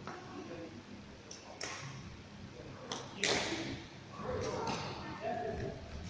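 Badminton racket strings striking a shuttlecock several times, sharp clicks that ring in a large hall, the loudest about three seconds in. A voice talks in the second half.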